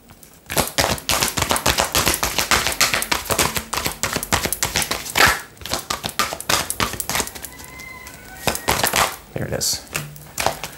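An oracle card deck being shuffled by hand: a fast, busy run of card snaps and rustles that eases off about seven and a half seconds in.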